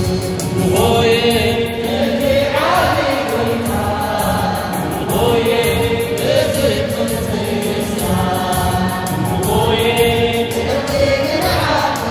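A choir singing an Eritrean Catholic hymn (mezmur), the voices swelling into a new phrase every two to three seconds over a quick, steady percussive beat.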